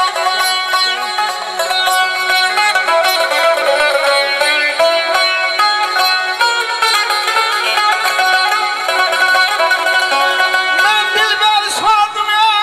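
Instrumental mugam passage: a tar plucked in quick ornamented runs, with a bowed kamancha playing along.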